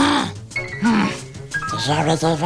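Cartoon character's gibberish voice: two short vocal exclamations, one at the start and one about a second in, each rising then falling in pitch, over background music.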